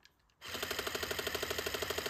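WowWee Dog-E robot dog making a rapid, even rattling sound of about eight pulses a second, starting about half a second in, as it responds to being put into its game menu.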